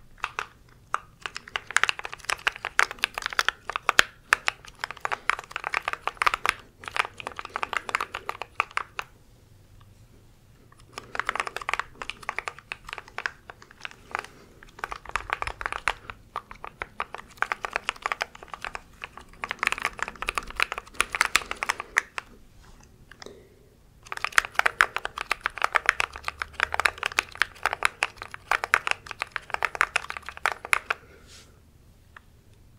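Fingers rapidly tapping and clicking on the keycaps of a small mechanical keyboard held close to the microphone, a dense patter of clicks. It comes in runs of several seconds, with brief pauses about a third of the way in and again about three-quarters of the way in.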